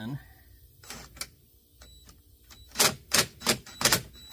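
Cordless impact driver hammering in four short, loud bursts near the end, after two faint clicks about a second in, backing out the Torx screws of an ATV's front panel.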